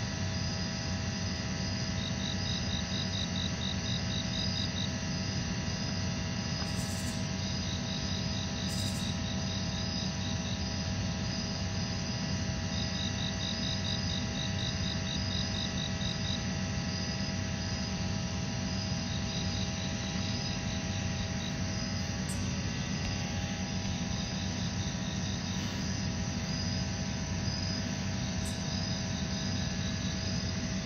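Insects trill high in pulsed bursts of a couple of seconds, repeating every several seconds, over the steady low rumble and hum of EMD SD60E diesel locomotives running in the distance.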